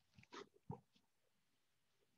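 Near silence: room tone, with two or three faint, brief sounds in the first second.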